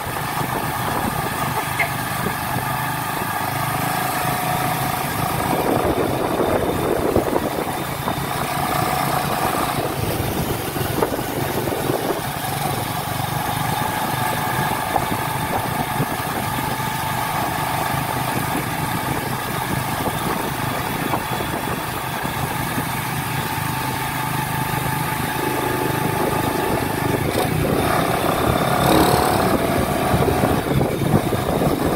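Honda XRM 110 underbone motorcycle's single-cylinder four-stroke engine, bored up to 125 cc, running steadily at cruising speed, heard from the rider's seat with road noise. Its note rises briefly near the end.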